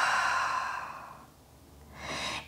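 A woman's long, deliberate sighing exhale through the mouth, a breathy hiss that trails off and fades out about a second in.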